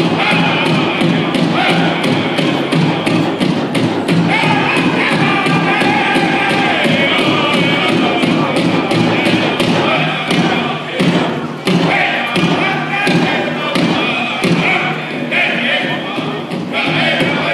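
Powwow drum group: a big drum beaten in a fast, steady rhythm by several drummers, with the singers' high voices over it.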